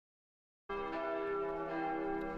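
Silence, then, under a second in, church bells start ringing, a dense mix of steady, lingering bell tones.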